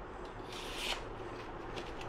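Brief faint rustle, about half a second in, with a few light clicks near the end: a Japanese handsaw being handled in gloved hands.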